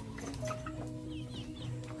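Chickens clucking and small birds chirping over steady background music.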